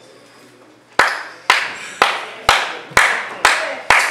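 Steady, evenly spaced hand claps, about two a second, beginning about a second in: seven sharp claps in a row in a hall.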